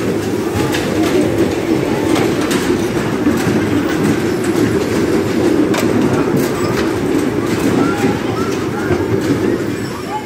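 Bumper cars running on the ride's metal floor: a steady rolling rumble throughout, with a few sharp knocks.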